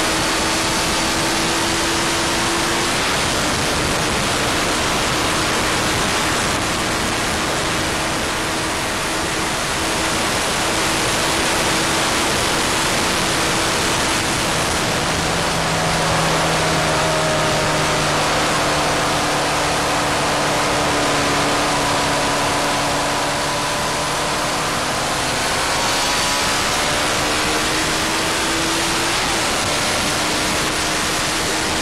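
Sport motorcycle running flat out at very high speed: a heavy, steady rush of wind over a tank-mounted microphone with the engine's steady note underneath. The engine note climbs slightly near the end, then eases back.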